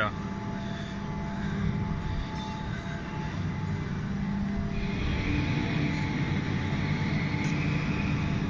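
Steady industrial machinery hum in a factory workshop: a low drone with a few faint steady tones above it, changing slightly about five seconds in.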